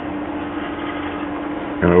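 Steady machine hum with one constant low tone, like a fan running, in a pause between words; a man's voice starts again near the end.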